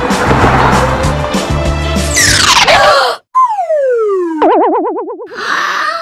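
Background music with a steady beat that ends about three seconds in with a downward whoosh. Then cartoon sound effects: a whistle-like tone sliding down in pitch, followed by a tone wavering quickly up and down.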